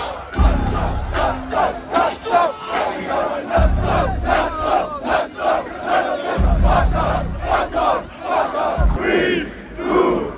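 Large festival crowd shouting together in a rhythmic, pulsing pattern, with a few deep bass booms from the stage sound system.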